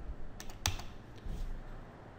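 A few computer keyboard keystrokes, the loudest about two-thirds of a second in: the last key presses of typing a password at a login prompt.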